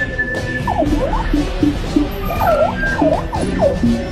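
Background music with repeated quick swooping notes that glide down and up again, over a dense low accompaniment.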